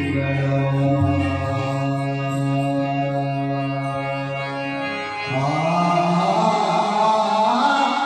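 Harmonium playing sustained notes. About five seconds in, a man's voice comes in singing a devotional bhajan over it.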